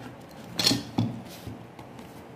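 A metal ruler pushed against faux-leather lining in the corner of an MDF box: a brief scrape about half a second in, then a sharp click about a second in and a fainter one shortly after.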